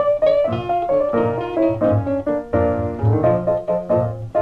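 Blues piano playing the instrumental intro of a 1941 small-band record: quick struck chords and single-note figures, with guitar and a low bass beat pulsing under them about twice a second.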